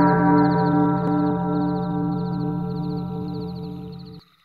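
A deep gong-like metallic stroke ringing on and slowly fading, its tone pulsing as it decays, with a faint high-pitched rhythmic ticking over it.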